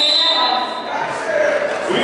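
A referee's whistle blows one steady high blast of about a second, the signal that starts a roller derby jam, over voices and chatter echoing in a large gym.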